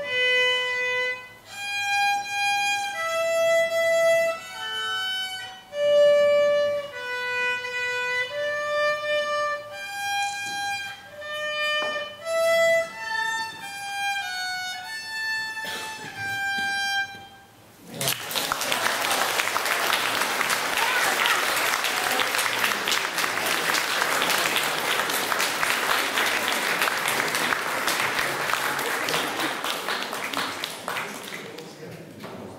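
Unaccompanied violin, played by a child, carrying a melody one note at a time; the piece ends about 17 seconds in. Audience applause then fills the rest.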